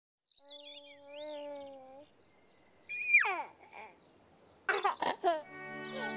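Cartoonish sound effects: bird-like chirps over a held note, then a whistle sliding sharply down in pitch. A baby's short giggles and babble follow, and steady theme music with held notes starts near the end.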